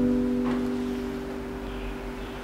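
Electronic keyboard holding one sustained chord that slowly fades, as quiet accompaniment under prayer.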